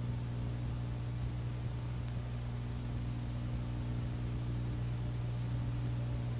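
Steady low electrical hum with a layer of hiss, unchanging throughout.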